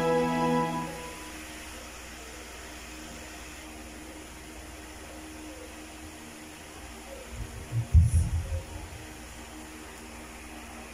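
A karaoke backing track ends on a held chord that dies away about a second in, leaving a steady low hiss and hum. Near the end comes a short cluster of low thumps.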